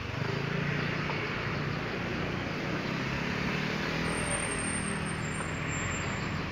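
A steady, low engine rumble heard from a distance over a general hiss, growing a little louder just after the start.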